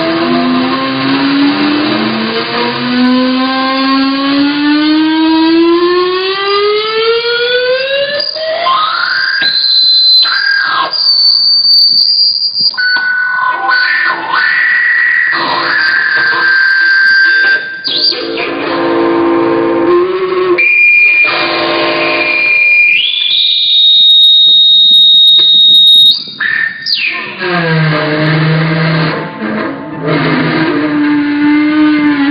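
Electric seven-string guitar played slide-style with a small amp-driven speaker pressed on the strings, sustaining the notes as speaker feedback. The note glides slowly upward over the first eight seconds, then gives way to high, held feedback tones that step between pitches, and drops back to lower sustained notes near the end.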